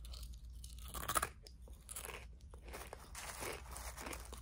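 Dry Frosted Flakes cereal crunching as it is chewed, a quiet string of irregular crunches.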